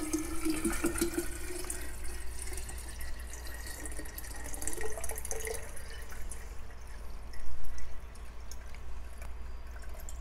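Liquid nutrient solution poured from a plastic jug into a plastic hydroponic reservoir container, a steady splashing pour with a tone that rises in pitch as the container fills.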